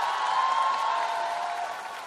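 Studio audience and judges applauding with some cheering, dying down toward the end.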